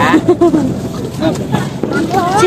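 Voices of people talking close by, with the general hubbub of a crowded street.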